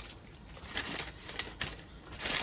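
Faint rustling and a few light taps from a cardboard shipping box being opened by hand, with crinkling of the brown packing paper inside.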